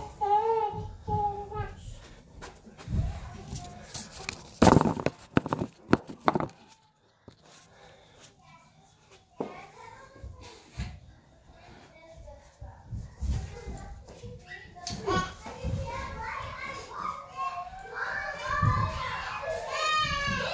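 Children talking and playing with high voices, at the start and again busily from about fifteen seconds on. A few loud knocks come about four to six seconds in, and a quieter stretch follows.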